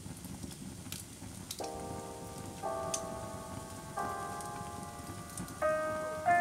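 Wood fire ambience: a low steady rumble with scattered sharp crackles. About a second and a half in, slow, soft jazz chords on a keyboard begin, a new chord every second or so, each fading as it holds.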